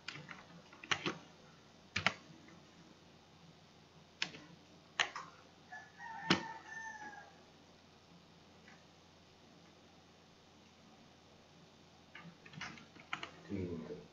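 Scattered computer mouse and keyboard clicks, single and in pairs, with a quiet stretch in the middle. A brief faint falling tonal call sounds once, about six seconds in.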